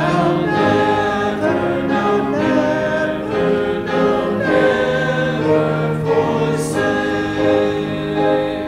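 Church congregation singing a hymn together in slow, held notes.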